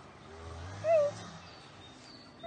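A dog growls low, then gives one short, high yelp about a second in.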